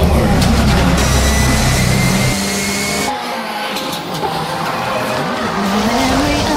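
Ford Fiesta gymkhana rally car engine running hard, cutting off sharply a little over two seconds in. A quieter stretch of car and tyre noise follows.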